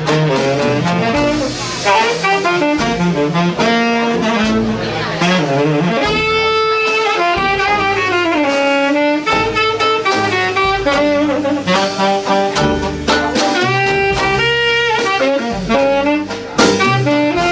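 Traditional jazz band playing, a tenor saxophone carrying a melodic solo line over the band's rhythm section.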